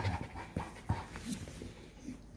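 Redbone Coonhound panting with her mouth open, a quick run of breaths that grows fainter toward the end.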